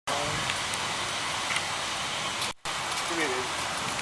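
Steady background hiss with faint voices. The sound drops out briefly about two and a half seconds in.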